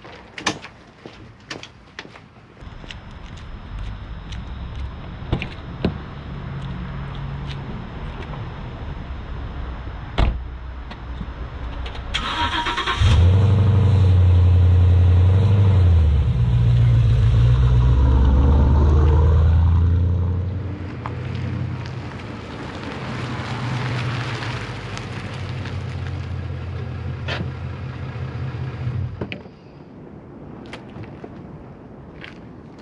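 A 2015 Ford Mustang GT's 5.0 V8 starting about twelve seconds in: a short starter whine, then the engine catches loud with a high idle flare and wavering revs before settling to a steadier idle. A lower engine hum runs before the start, and a few sharp clicks come in the first two seconds.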